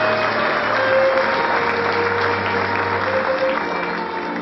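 Audience applauding over instrumental stage music; the clapping thins out toward the end.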